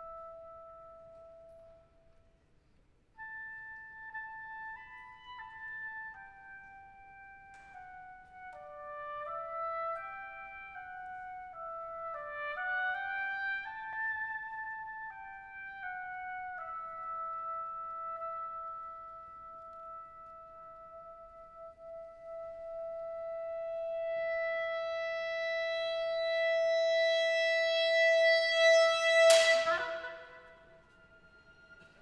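Solo clarinet: a held note, a brief pause, then a slow wandering melody that settles onto one long high note, swelling to loud. A sharp percussive hit strikes just before the end.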